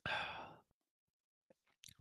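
A man's short breathy sigh, an exhale lasting about half a second.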